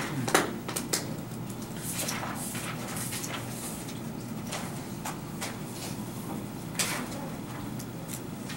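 Classroom room noise during quiet seatwork: a steady low hum with scattered small clicks and knocks, the loudest shortly after the start and again near the end.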